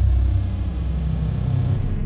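A deep, steady low rumble, an added cinematic intro sound effect rather than a live recording.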